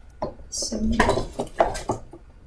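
Cardboard product box being handled: several short rustles and knocks over the second and a half, with a brief murmured voice near the middle.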